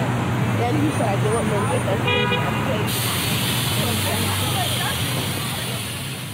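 Busy city street traffic with passers-by talking nearby. A vehicle horn toots once, briefly, a little after two seconds in, and a steady hiss joins in just after it.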